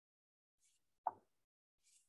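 A single soft tap about a second in, a fingertip or pen tapping a key on a touchscreen's on-screen keyboard, with a faint hiss on either side of it.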